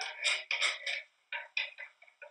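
Canned whole tomatoes and their juice being shaken out of the can into a pan, an irregular run of short wet splashes and plops.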